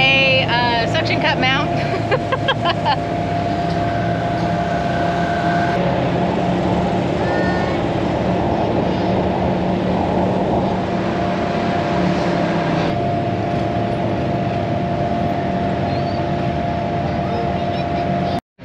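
Polaris Ranger Northstar UTV driving along a dirt trail, heard from inside its closed cab: a steady engine drone with a steady whine over it. A voice is heard briefly in the first few seconds.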